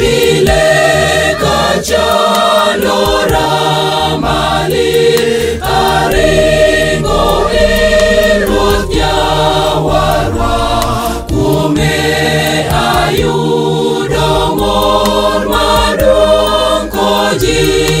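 A church choir of women and children singing a gospel song in Dholuo, many voices together over a steady low accompaniment.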